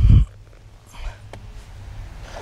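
A low thump, then a steady low rumble of handling or wind noise on a handheld camera's microphone, with a faint click a little past halfway.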